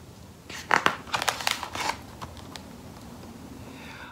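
A picture-book page being turned: a quick cluster of paper rustles and crinkles between about half a second and two seconds in.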